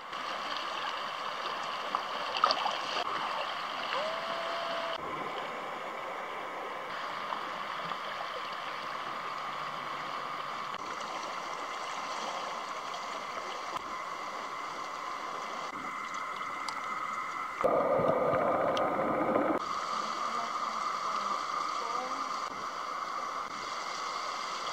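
Shallow sea water lapping and washing among shoreline rocks in a steady wash, with a louder surge of about two seconds near the end.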